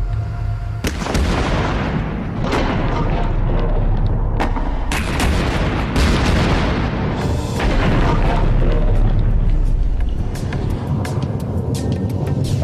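Explosive charge of a model magnetic mine going off about a second in with a loud boom. Many sharp cracks and pops follow for the rest of the time as the model ship blows apart and burns. Background music plays underneath.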